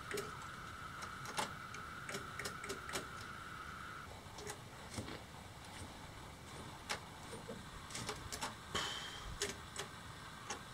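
Scattered sharp clicks and snaps of a live wire sparking against the terminal of a brushed 36 V DC electric motor that gets current but will not spin. A faint steady high tone runs underneath and stops about four seconds in.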